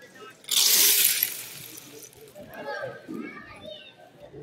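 A sudden loud rushing, hiss-like noise lasting under a second near the start, followed by onlookers' voices talking.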